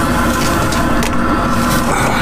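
Diesel truck engine idling steadily close by, a low even rumble, with a few faint clicks as the air-line coupling and bottle are handled.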